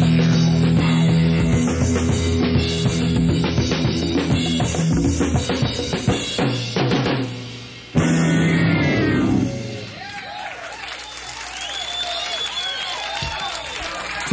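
Live rock band with a drum kit playing loudly; the sound dips at about seven seconds and cuts back in abruptly at eight, then the music ends shortly after and gives way to a quieter stretch of audience cheering.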